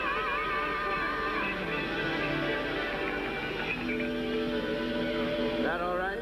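Live gospel quartet band music: sustained held notes with a wavering vibrato, fading into a steady held chord in the second half, with a pitch sliding upward near the end.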